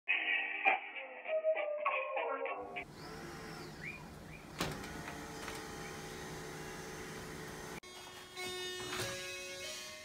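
A short burst of music with a beat for the first few seconds. Then quiet room tone with a faint click. Near the end an electronic doorbell chime plays a few steady stepped tones.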